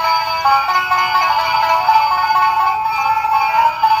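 Animated skeleton banjo-player Halloween decorations playing an electronic tune through their built-in speakers. The music sounds thin, with little bass.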